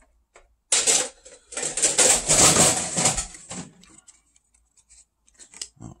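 Plastic packaging crinkling and rustling for about three seconds as the promo card is taken out of the tin's plastic insert, then a few faint light clicks near the end.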